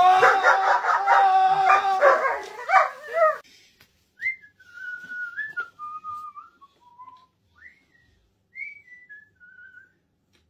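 A vacuum cleaner running with a steady hum while a man lets out loud, strained cries with the hose at his face; it cuts off suddenly after about three seconds. Then someone whistles a short tune of several notes, stepping down and then up again, over a quiet room.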